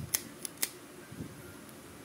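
Several sharp clicks from a spinning fishing reel being turned over in the hands, close together in the first half-second or so, followed by faint handling noise.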